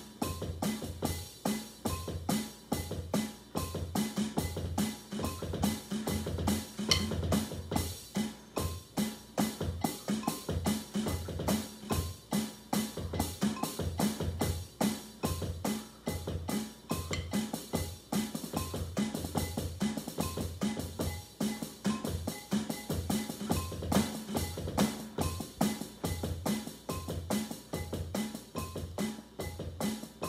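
Drum kit played with sticks in a steady, even groove: continuous stick strokes over regular low bass-drum thumps, with no break.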